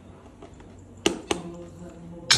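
Two sharp metallic clicks about a quarter of a second apart, a little over a second in, from handling a cordless impact wrench and its socket.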